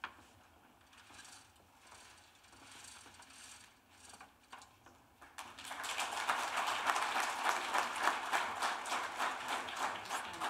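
Faint rustling as a paper cover is pulled off a sign board, then audience applause starts about halfway through and becomes the loudest sound.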